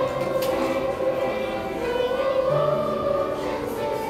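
Children's choir singing in unison, holding long notes; the melody rises about halfway through.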